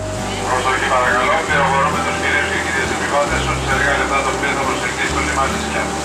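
Many voices chattering at once, no words standing out, over the steady rush and rumble of a ferry under way, with low music underneath.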